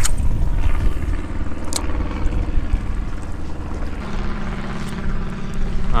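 Spinning reel cranked on a steady retrieve, its gear whir over low wind rumble on the mic, with a sharp click at the start and another just under two seconds in. The whir changes pitch about four seconds in.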